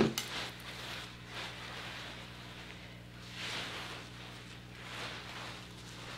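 Soft combing through a hair topper: two faint strokes of the comb about three and a half and five seconds in, over a steady low hum.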